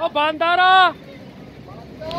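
A man's voice calling out in one drawn-out word, ending just under a second in, followed by a faint, steady low background rumble.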